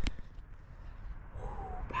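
Quiet outdoor background with a low rumble, a sharp click right at the start, and a short spoken "ooh" near the end.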